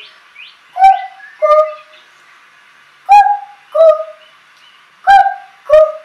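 A young girl imitating a cuckoo in a high voice, calling "ku-ku" three times, each call a higher note followed by a lower one, about two seconds apart.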